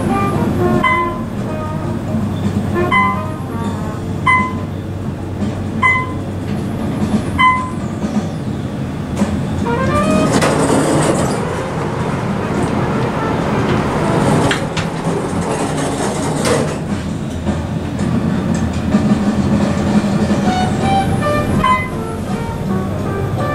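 Plucked guitar music over the steady running rumble of an Otis traction elevator car, with a louder stretch of noise in the middle.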